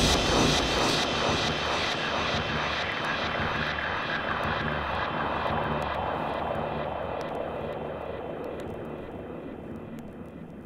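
The outro of a techno record played on vinyl. The kick drum has dropped out, leaving a noisy, jet-like synth wash that fades steadily away.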